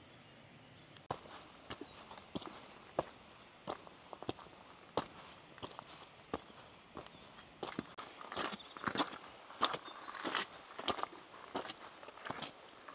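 A hiker's footsteps on a mountain path: irregular steps starting about a second in, growing quicker and denser in the second half.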